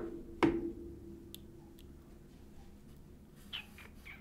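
Two sharp knocks of something hard tapped or set down, about half a second apart, the second ringing briefly; then a few faint ticks.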